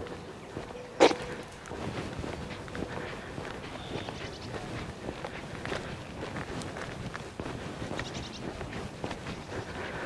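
Footsteps walking along a tarmac road, with a single sharp click about a second in.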